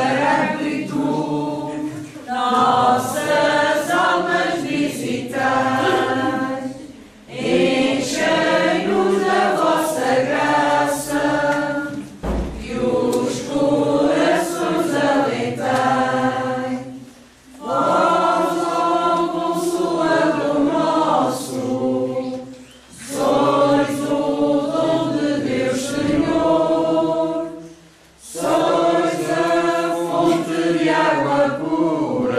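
A small group of women and children singing a religious song together without accompaniment, in phrases of about five seconds with short breaks between them.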